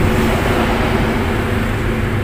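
Street traffic noise, with a motorcycle passing close by.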